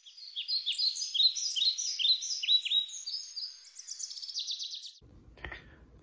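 Birdsong: a string of quick, high, downward-sweeping chirps, turning into a fast trill of repeated notes about four seconds in.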